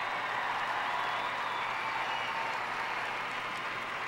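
Large audience applauding steadily, easing slightly toward the end.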